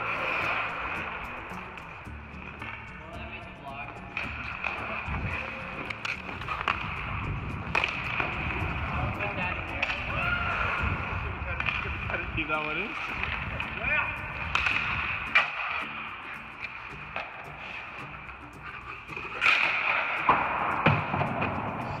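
Hockey skate blades scraping and gliding on rink ice, with sharp irregular knocks of sticks and pucks on the ice.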